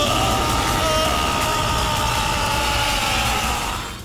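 Cartoon explosion sound effect for a monster's attack: a loud, sustained rushing rumble with a long held high tone above it that slides down in pitch at the start and then stays level, fading near the end.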